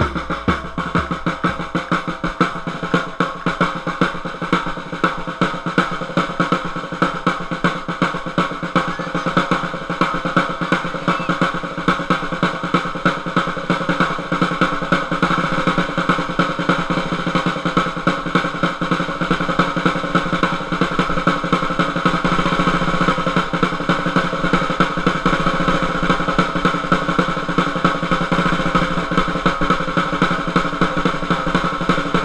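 Marching-band snare drum played close up in a rapid, unbroken run of strokes.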